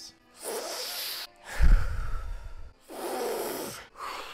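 A man taking long, noisy breaths, three in a row, blowing out through pursed lips; the loudest, in the middle, is a puff of air that hits the microphone with a low rumble.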